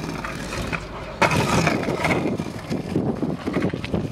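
Kick scooter wheels rolling over rough, coarse asphalt, a continuous gritty rumble with many small clicks that gets louder about a second in.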